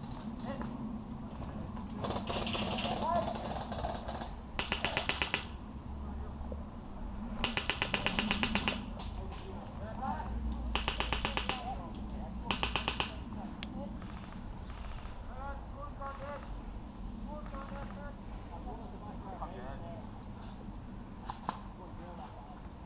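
Airsoft electric rifles firing four short full-auto bursts in the first half, each a rapid, even string of shots lasting about a second or less.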